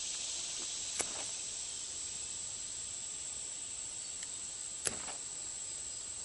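A sharp pocket knife blade cutting through twisted natural-fibre cord, with two short sharp snaps, about a second in and near the end. Under it, a steady high-pitched hiss of insects.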